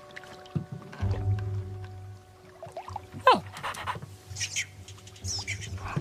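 Animated-film soundtrack: soft score music with held notes, over a low steady rumble that comes in about a second in. A sharp falling cry a little past three seconds in, and a few short high squeaks near the end.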